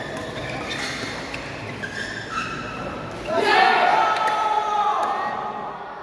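Loud shouting voices for about two seconds, starting about three seconds in, as a badminton rally ends, echoing in a sports hall; fainter voices and a few light clicks before it.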